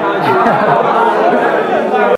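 Many students' voices talking over one another at once: loud classroom chatter.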